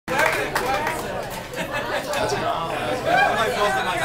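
Indistinct chatter: several people talking at once, with no music playing.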